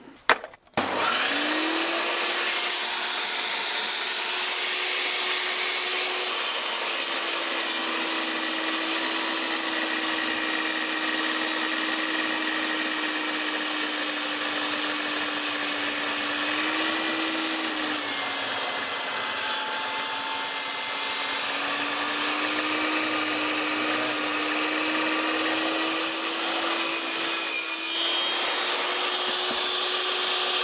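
1800 W VEVOR table saw switched on with a click about a second in, its motor spinning up to a steady whine. It then runs as a round log is pushed through the blade along the fence. The pitch sags as the blade bites into the wood around six seconds in, drops lowest under load for a few seconds about two-thirds through, and comes back to full speed near the end.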